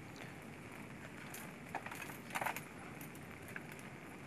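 Faint crunching and sharp clicks of car-window glass being broken out and cleared, against a low steady hiss, with the loudest cluster of clicks a little past the middle.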